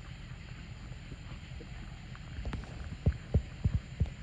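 Horse's hooves thudding dully on a soft sand arena floor, with a few loud thuds in the last second. A steady low rumble underlies them, typical of wind on the microphone.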